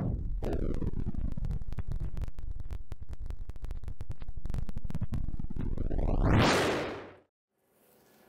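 A loud, distorted CB radio transmission from a high-power amplifier being keyed down: a steady rumbling signal full of rapid crackle. It sweeps upward and swells to its loudest about six seconds in, then cuts off suddenly.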